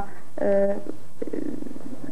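A woman speaking in drawn-out, halting syllables, with a short, low, rough buzz about a second in.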